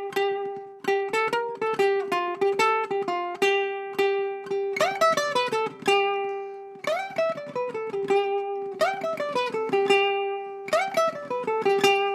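Ukulele played solo: a fast-picked surf phrase, a G pentatonic run over a repeated high G note. From about five seconds in, a glissando slides down the neck roughly every two seconds.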